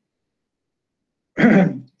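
Complete silence for over a second, then a man clears his throat once, briefly, with the pitch falling.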